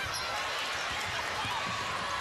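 Steady arena crowd noise, with a basketball bouncing a few times on the hardwood court.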